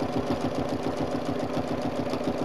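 Domestic sewing machine stitching at a steady, fast, even rhythm while free-motion quilting a straight line along an acrylic ruler with a ruler foot.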